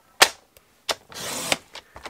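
Cardstock handled on a paper trimmer: a sharp click, a smaller click, then a brief scraping swish of card across the trimmer lasting about half a second.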